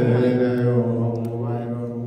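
Ethiopian Orthodox liturgical chant sung by men, one into a microphone, holding one long low note at the end of a phrase that slowly fades away.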